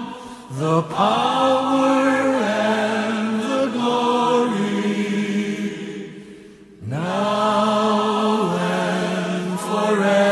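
Slow sung music: voices hold long, choir-like notes that slide up into pitch. The singing fades about five seconds in, and a new phrase swoops up into a held note about seven seconds in.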